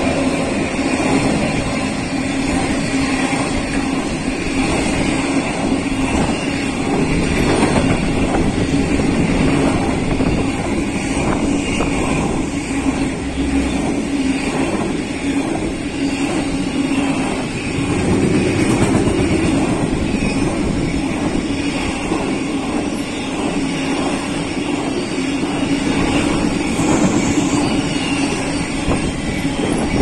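Container wagons of an intermodal freight train rolling past close by at steady speed: a continuous rumble of steel wheels on rail with a steady hum and constant fine clicking from the wheels and couplings.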